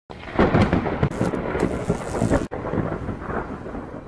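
Thunder: a loud crackling clap for about two and a half seconds that breaks off suddenly, then a lower rolling rumble that fades away.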